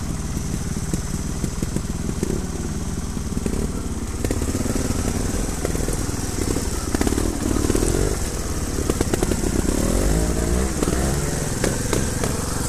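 Trials motorcycle engine running at low speed on a rocky descent, with the revs rising and falling several times in the second half.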